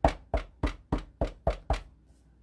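Wood-mounted rubber stamp tapped repeatedly onto an ink pad to ink it: a run of seven quick knocks, about three or four a second, stopping near the end.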